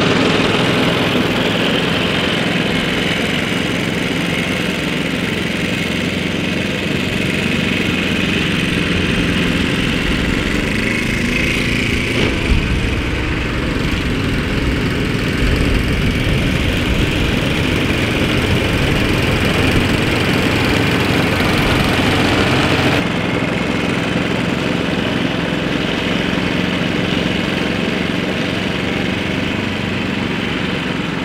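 Engine of a walk-behind cylinder (reel) mower running steadily while mowing and collecting the clippings, loudest at the start as it passes close by, then moving away. About three-quarters of the way through the sound drops slightly in level.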